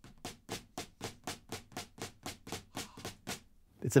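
Drumsticks striking a rubber practice pad laid on a snare drum in a steady run of strokes, about four a second, stopping near the end.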